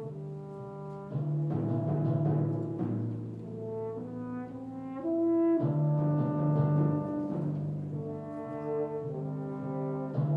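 French horns playing a bold theme in held notes with the orchestra, getting louder about halfway through.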